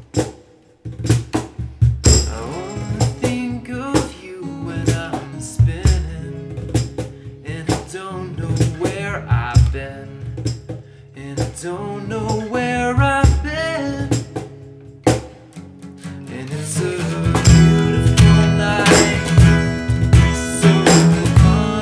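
Acoustic guitar played in an instrumental passage of an acoustic folk song, with light cajon percussion underneath. The music nearly stops about a second in, then the guitar picks back up and the playing grows louder and fuller near the end.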